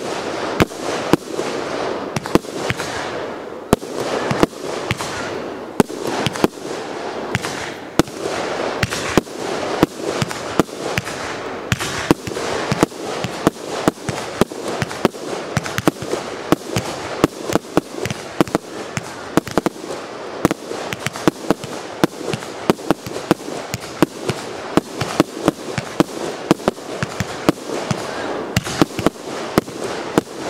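Aerial fireworks shells bursting in rapid succession, sharp bangs several a second over a continuous crackle.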